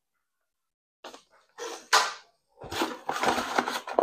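Plastic packaging crinkling and parts being shuffled about in a cardboard box, in short bursts starting about a second in and coming thicker near the end.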